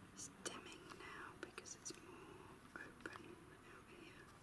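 A person whispering faintly, with a few small clicks and handling sounds.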